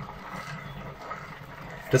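Boiled potatoes squeezed through a plastic potato ricer: a soft, even squishing with no distinct clicks or knocks.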